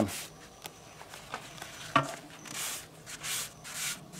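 Cloth shop towel rubbing over the side of an outboard powerhead, a few short wiping strokes in the second half, with a sharp click about two seconds in.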